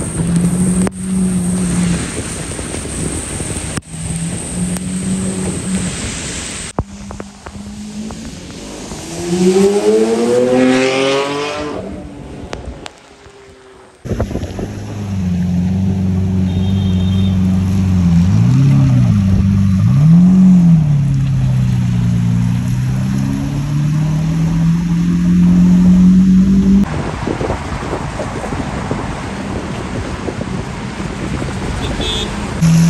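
Lamborghini Aventador V12 running at low speed, with a rev climbing about ten seconds in and, after a short break, two quick throttle blips followed by a long steady pull. There is a haze of rain and road spray under the engine.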